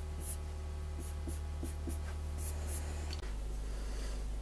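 Marker pen drawn across paper in a series of short scratchy strokes, about seven in all, as lines are underlined. A steady low electrical hum runs underneath.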